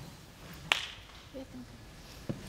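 A quiet concert hall settling after applause: faint murmur and rustle from the audience, with one sharp click about two-thirds of a second in.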